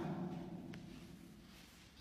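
The last echo of a man's chanted Quran recitation dying away in the room, fading steadily into faint room tone, with a small click about three-quarters of a second in.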